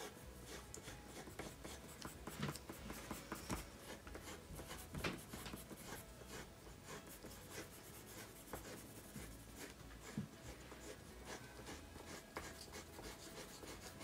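Colored pencils shading on paper, two people coloring at once: many short, faint strokes in irregular succession.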